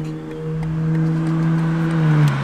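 A Ferrari sports car's engine passing close by: one steady engine note that grows louder and drops in pitch as the car goes past, near the end.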